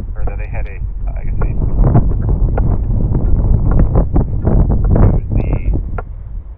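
Wind buffeting the microphone: a loud, continuous low rumble, strongest through the middle of the stretch. People's voices come through briefly at the start and again near the end.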